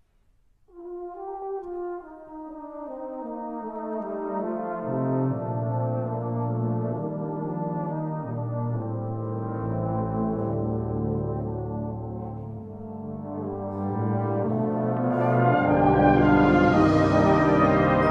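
Brass band playing the slow, reflective horn-section opening of a piece in held chords. Low brass joins about five seconds in, and the band builds steadily to its loudest playing near the end.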